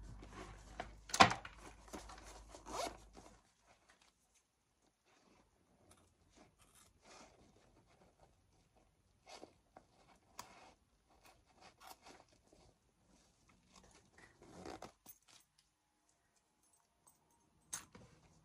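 A leather handbag handled and turned over on a table, with a sharp knock about a second in. Then scissors make a scattered series of faint, crisp snips as they cut stitching beside a zipper.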